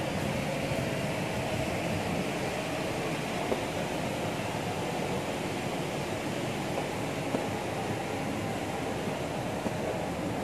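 Steady city background noise: a constant hum and rush with a faint steady tone in it, and a few faint ticks.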